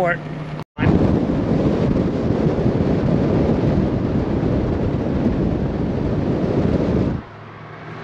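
Loud, even rush of wind buffeting the microphone and road noise from a camera outside a moving vehicle at road speed. It cuts in suddenly about a second in and cuts off near the end, giving way to a quieter steady hum inside the cab.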